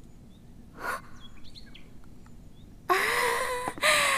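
Quiet room with a short breath-like sound about a second in and a few faint bird chirps. Near the end a young woman lets out a long, high-pitched wordless vocal sound that rises in pitch and then holds, followed by a second, falling one.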